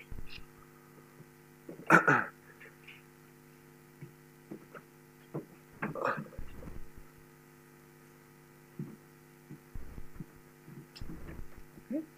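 A man's single cough about two seconds in, over a steady low electrical hum made of several even tones. A few faint knocks and rustles follow later.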